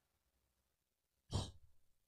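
A man's single short breath, a brief exhale heard about a second and a half in, against otherwise near silence.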